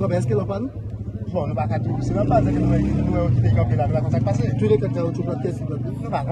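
Men's voices over the steady low hum of an engine running.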